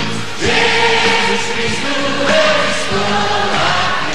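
Live music with a choir singing long held notes over the accompaniment.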